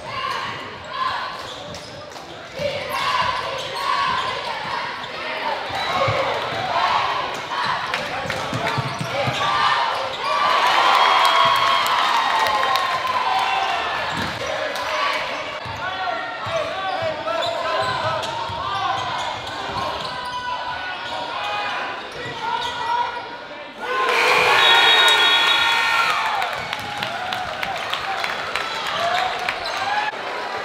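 Basketball game sounds in a gym: the ball dribbling and bouncing, with many voices from players and spectators echoing in the hall. Near the end the voices turn suddenly louder.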